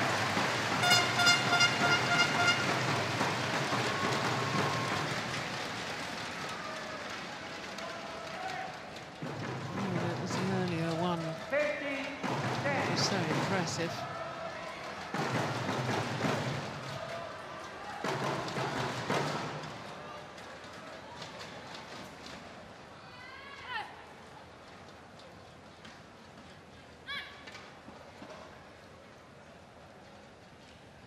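Arena crowd cheering and shouting after a badminton rally, with a fast string of horn-like toots about a second in. The noise dies away over the next twenty seconds, leaving a couple of brief high chirps near the end.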